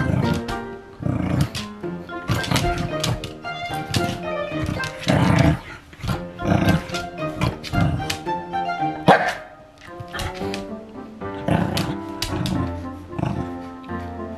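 Background music, with a Pembroke Welsh Corgi barking at a pet slicker brush it is wary of; the sharpest bark comes about nine seconds in.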